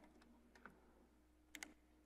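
Near silence: room tone with a low steady hum, and two faint, sharp clicks close together about a second and a half in.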